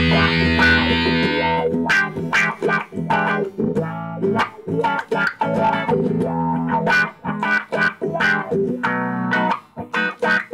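Electric guitar played through a Dunlop Cry Baby GCB-95 wah pedal with the effect switched on. A held distorted chord cuts off just under two seconds in, followed by a run of short picked notes and chords.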